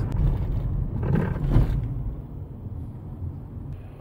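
Low, steady road and engine rumble heard inside a moving car's cabin, swelling briefly about a second and a half in, then fading down over the last two seconds.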